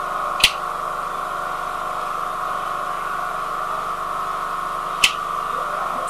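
A steady, even hum, broken by two short sharp clicks: one about half a second in and one about five seconds in.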